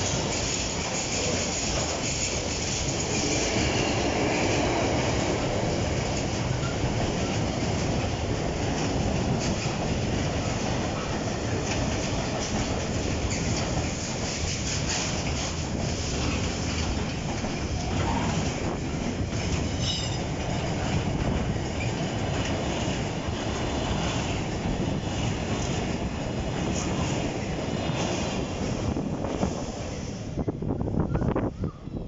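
Container freight train wagons rolling past at close range, steel wheels running over the rails in a steady noise, with a brief high wheel squeal about two-thirds of the way through.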